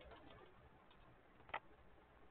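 Near silence broken by a single sharp click about one and a half seconds in.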